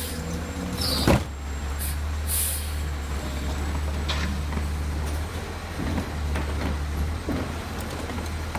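Automated side-loader garbage truck idling with a steady low engine hum while its hydraulic arm grips a yard-waste cart and lifts it up over the hopper. A sharp loud clunk comes about a second in, and lighter knocks follow later.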